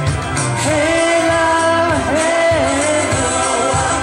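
A woman singing live into a handheld microphone over backing music, holding long notes that waver and bend in pitch.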